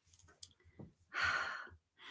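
A person sighing into the microphone: one audible breath out, starting about a second in and lasting about half a second, after a few faint clicks.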